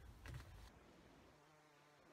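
Near silence: room tone, with a brief faint rustle about a quarter second in and a faint low hum near the end.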